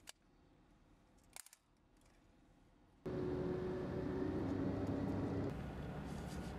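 Concrete rebound hammer (Schmidt hammer) pressed against a concrete wall, clicking sharply as it fires near the start and again about a second and a half in, testing the concrete's surface hardness. About three seconds in, a louder, steady outdoor background with a low hum takes over.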